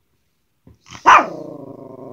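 Pomeranian vocalizing about a second in: a loud, sharp bark-like start that draws out into a long, low, steady growling howl.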